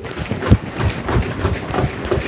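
A plastic bottle of Oxybee oxalic acid solution, with sucrose powder just added, shaken by gloved hands to dissolve the sugar: the liquid sloshes with irregular knocks, several a second, the heaviest about half a second in.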